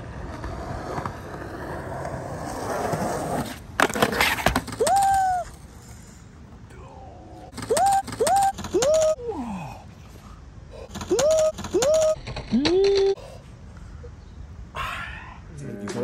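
Skateboard wheels rolling on concrete, then a loud clatter of impacts about four seconds in as the ollie attempt fails and skater and board hit the ground. After it come several short vocal cries, each rising in pitch.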